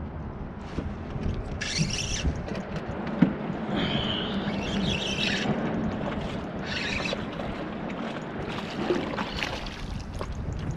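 Spinning reel being cranked and line worked from a kayak, with several short bursts of rasping and a low steady whir while the handle turns, over steady wind and water noise. Near the end, a hooked fish splashes at the surface.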